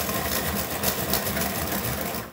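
Colored pencil scribbling fast back and forth across paper in quick, repeated strokes.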